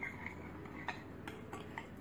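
A spoon clinking faintly against a glass bowl while stirring dry yeast into water to dissolve it: a few light ticks, the first about a second in.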